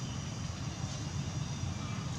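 Steady low rumble with a few faint high chirps over it.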